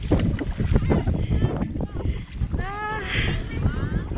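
Shallow sea water splashing and sloshing around wading legs, with a steady rumble of wind on the microphone. A high-pitched voice calls out twice in the second half.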